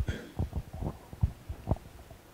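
A run of soft, irregular low thumps and knocks, about seven in two seconds, in a quiet room.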